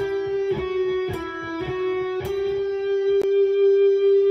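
Electric guitar playing a slow single-note phrase, picked about twice a second, with the last note held and ringing through the second half. It is part of a triplet lick in E, demonstrated at reduced speed.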